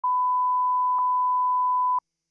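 Steady line-up tone of a broadcast countdown clock, a single pure pitch held level, with a faint click about a second in; it cuts off suddenly.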